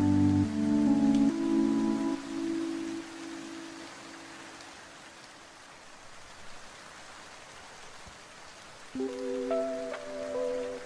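Chill lofi music with held chords over a steady gentle rain soundtrack. The music fades out in the first few seconds, leaving the rain alone, and comes back in about a second before the end.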